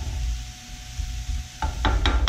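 Sliced onions sizzling softly in oil on low heat as a wooden spoon stirs them around the skillet. Near the end come two sharp knocks.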